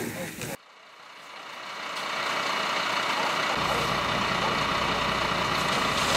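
Fire truck engine idling steadily. It fades in just after an abrupt cut about half a second in, and a deeper rumble joins a few seconds later.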